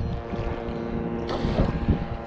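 Wind rumbling on the microphone, with a faint steady drone underneath and a brief hiss about one and a half seconds in.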